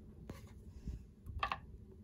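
Quiet handling of baseball cards: cardboard cards rubbing and sliding against each other as one is set down among others, with a short scrape about one and a half seconds in.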